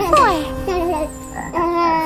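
Cartoon frog croaking sound effects, opening with a sound that falls steeply in pitch, followed by short wavering croaks.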